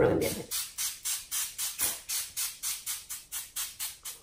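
Background music with a quick, even ticking beat of hi-hat-like hits, about five a second.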